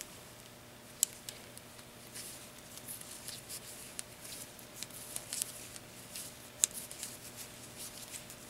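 Wooden knitting needles clicking lightly and yarn rustling as stitches are knitted, with two sharper clicks, one about a second in and one later on.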